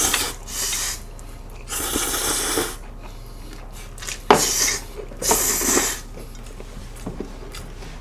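Cold spicy mixed noodles (bibim-myeon) being slurped with chopsticks: four airy slurps, each about half a second to a second long, with a sharp click of chopsticks or bowl about four seconds in.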